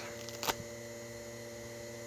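Steady electrical hum made of several level tones, with one short click about half a second in.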